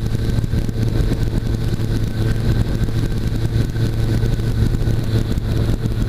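Weight-shift trike's engine running with a steady drone, with wind rushing over the wing-mounted microphone as the aircraft descends on final approach.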